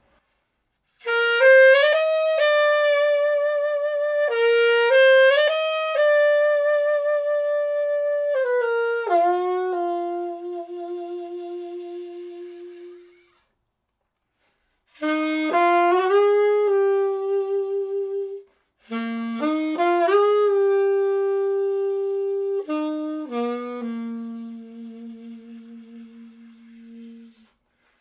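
Chateau custom alto saxophone, with a solid nickel body and a copper alloy neck, played solo in slow phrases of long held notes with vibrato. The playing stops for about two seconds near the middle.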